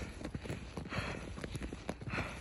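Footsteps crunching through fresh snow: a quick, irregular run of crisp crunches.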